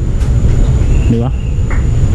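A steady low rumble, with a couple of short spoken words about a second in.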